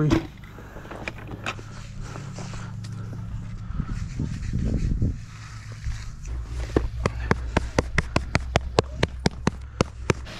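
A quick even run of slaps, about five a second, as a hand pats a rubber texture skin down into setting stamped concrete. A low steady hum lies underneath.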